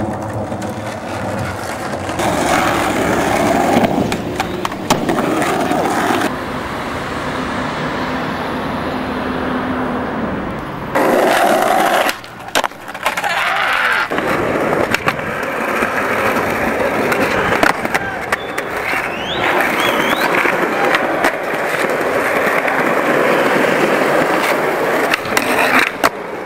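Skateboard sounds across several short street clips: urethane wheels rolling on concrete and asphalt, with sharp clacks from tail pops, landings and the board hitting the ground. The sound changes abruptly several times as one clip cuts to the next.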